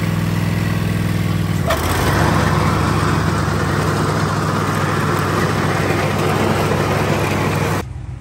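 Zero-turn riding mower's engine running steadily. About two seconds in there is a click and the engine sound turns rougher and noisier.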